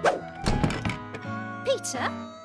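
A front door shutting with a heavy thud about half a second in, over light background music.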